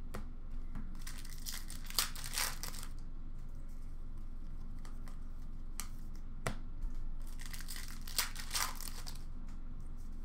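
Upper Deck hockey card packs and cards being handled: foil wrappers crinkling and tearing and cards sliding against each other, in short scattered rustles. The busiest stretches come about two seconds in and again near the end.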